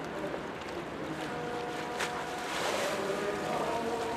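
Harbour water and wind noise as a small cargo ship passes close by, its bow wave rushing; a brief louder rush of hiss comes just before three seconds in.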